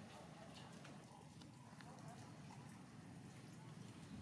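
Near silence: faint outdoor background with a few soft, scattered clicks.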